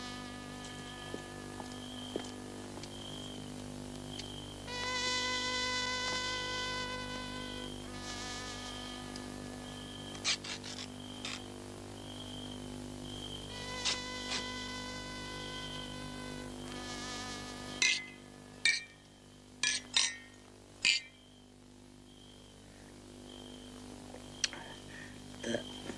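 A steady, buzzing soundtrack drone with many even overtones that swells twice, with a short high tone repeating about every second and a half. Near the end, four or five sharp clicks or knocks come in quick succession.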